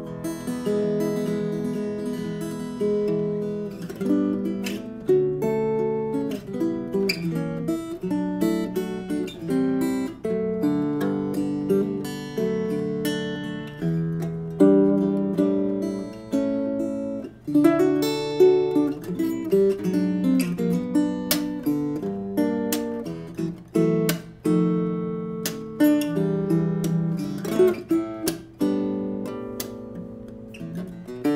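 HEX Bumblebee BB120S, a 79 cm super-mini-body all-sapele acoustic guitar, played fingerstyle: a continuous run of plucked single notes and chords, sitting mostly in the middle register, with occasional sharp accented strokes.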